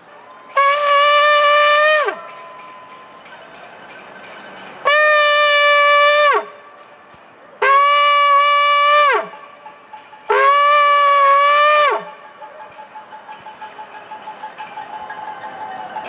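Ram's-horn shofar blown in four long blasts, each about a second and a half at one steady pitch and each dropping in pitch as it ends.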